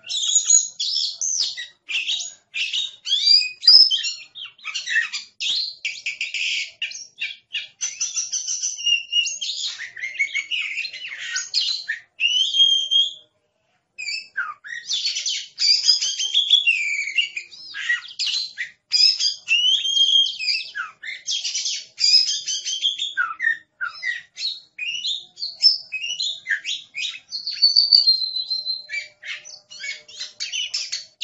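Oriental magpie-robin (kacer) singing a long, continuous song of rapid, varied chattering notes and sliding whistles, with one short pause about halfway through.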